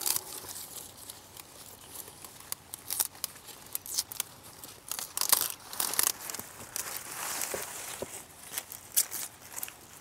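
Large cauliflower leaves rustling and crinkling as they are pulled aside and snipped away, and the head is cut from its stalk, with irregular sharp snaps and crackles.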